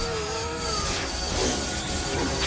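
Cartoon power-up sound effect with background music: a wavering synthetic tone that fades out about a second in, over a steady shimmering hiss.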